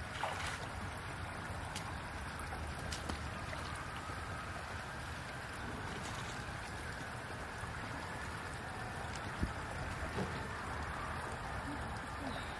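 Hands working in a shallow muddy stream, with a few small splashes and knocks, the sharpest about nine and a half seconds in. Under them runs a steady rushing noise of water and wind.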